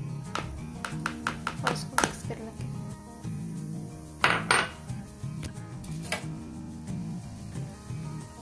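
Kitchen clinks and taps: a quick run of light clicks in the first two seconds as corn flour is tapped out of a small ceramic bowl onto chicken pieces, then two louder knocks about four seconds in and a few scattered clicks as a spoon starts mixing, over steady background music.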